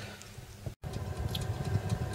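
Faint room tone, cut off abruptly a little under a second in, followed by the low steady hum of an oven running while a pizza bakes inside.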